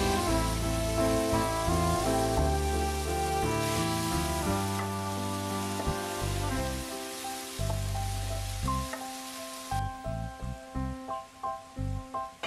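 Chopped mushrooms sizzling as they fry in oil in a cast-iron skillet, under background music. The sizzle stops suddenly about ten seconds in, leaving the music alone.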